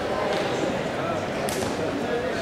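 Indistinct chatter of voices in a large sports hall, with one sharp smack about one and a half seconds in.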